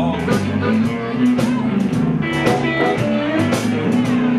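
Live electric blues band playing an instrumental fill between sung lines, with Fender Stratocaster electric guitar, Fender bass and a drum kit, and some bending notes.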